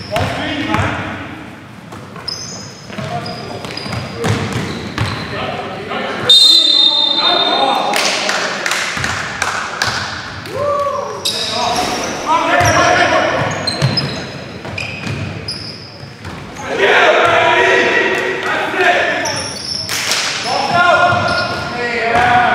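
A basketball game in a gym: the ball bouncing on the floor, short high sneaker squeaks and players calling out.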